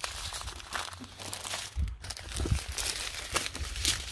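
Small plastic zip-lock bags of diamond-painting drills crinkling as they are handled and shuffled, with a couple of low thumps about halfway through.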